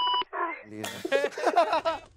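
A short electronic beep, lasting about a quarter second, at the very start, followed by people's voices and laughter.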